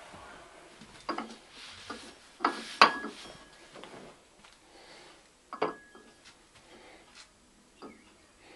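Hard objects being handled and set down on a work surface: a handful of separate knocks and clinks, the loudest about three seconds in, two of them leaving a brief ringing tone.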